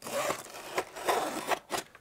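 Utility knife slitting the tape and cardboard of a shipping box, a run of rasping scrapes, with the cardboard rustling as the box is opened.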